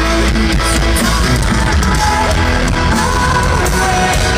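Metalcore band playing live through a festival PA: distorted electric guitars, bass and drums with singing. The recording is muddy and the vocals are hard to make out.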